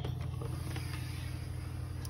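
Steady low background hum with no distinct knocks or clicks.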